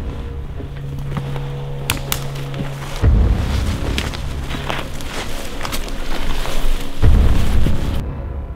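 Dramatic background music: held low notes with deep drum booms about every four seconds, two of them about three and seven seconds in.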